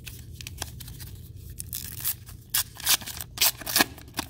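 Foil wrapper of a 1991 Upper Deck baseball card pack being torn open by hand: quiet handling at first, then several sharp crinkling, tearing bursts in the second half.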